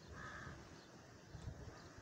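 A single faint bird call, about half a second long, right at the start, with a brief low rumble a little later.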